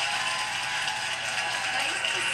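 Studio audience applauding steadily in welcome, heard through a television's speaker.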